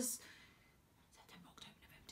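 A woman's spoken word trails off, then a pause of quiet room tone with a soft breath.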